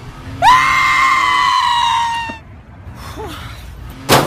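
A person screaming: one long, high shriek that begins about half a second in with a sharp rise in pitch, holds nearly level for about two seconds, then stops.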